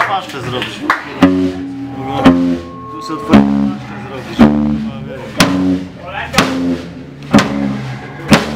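Live rock band starting a slow song about a second in: ringing guitar and bass chords struck together with drum hits about once a second. Voices chatter briefly before the first chord.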